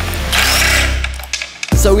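Cordless drill whirring for about a second as it unscrews the bolts holding a skateboard truck to the deck, over background music.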